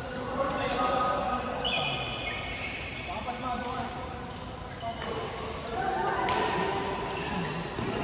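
Badminton doubles rally: sharp racket hits on the shuttlecock a second or two apart, shoes squeaking on the court mat, and voices from around the hall.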